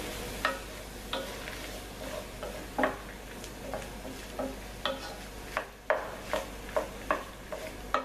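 Wooden spoon stirring green olives in tomato paste frying in a pan, with no water added: a steady sizzle broken by irregular clacks and scrapes of the spoon against the pan and the olives knocking together.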